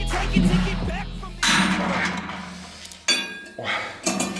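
Background music fading out, then two sudden metallic clanks about a second and a half apart, the second one ringing, from gym machine weights being moved and set down.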